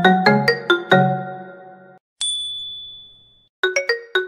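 Short logo jingle of struck, chime-like notes: a quick run of about five notes ringing out over the first two seconds, a single high ping that slowly fades, then another quick flurry of notes near the end.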